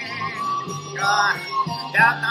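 A woman singing two short phrases with a wide vibrato over a karaoke backing track, one about a second in and another at the end.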